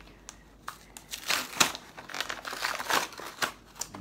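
Toy packaging crinkling and tearing as it is pulled open by hand: a run of irregular crackles, busiest from about a second in until shortly before the end.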